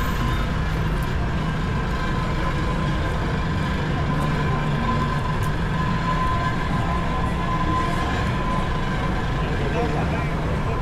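Busy city street at night: a steady low rumble of road traffic with passers-by talking, and a faint steady high tone over it.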